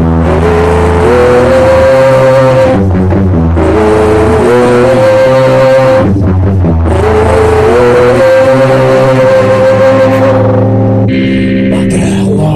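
Loud, distorted electric guitar and bass playing a riff of long held notes. Each phrase slides up in pitch and then sustains, and the phrase repeats three times with short breaks between.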